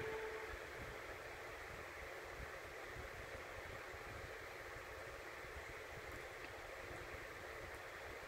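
The tail of a music jingle dies away in the first half second, then a faint, steady hiss from a silent stretch of VHS tape playing through a TV.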